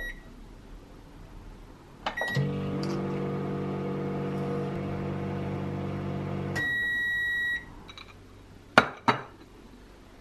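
Microwave oven being started and run: a short keypad beep, a click and a second beep, then the steady hum of the oven running for about four seconds. A long, louder beep follows as the cycle finishes, and two sharp clicks come near the end.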